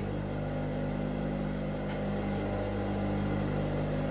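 Steady low electric motor hum, even and unbroken, with no stitching.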